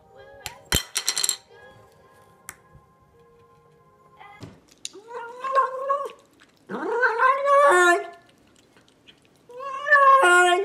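A cat making strange, drawn-out meows while it eats, three calls about a second long each in the second half, the middle one sliding up in pitch as it starts. Before them, a faint steady hum and a couple of sharp clicks.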